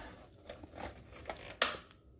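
Clicking from the controls of a Mr. Heater Portable Buddy propane heater as it is being lit: a few faint clicks, then one sharp click about one and a half seconds in.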